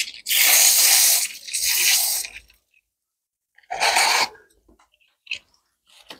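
Water hissing from a garden hose spray nozzle in short bursts as a handful of stones is rinsed, two longer bursts followed by a shorter one about four seconds in.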